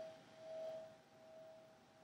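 Meditation bell ringing out after being struck: one faint tone that swells and fades about three times as it dies away.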